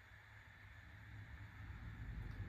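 Near silence: room tone with a faint low rumble that grows slightly louder.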